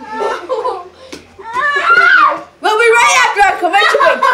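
Children's voices shouting and laughing, with a long rising-and-falling call about two seconds in, then several voices at once.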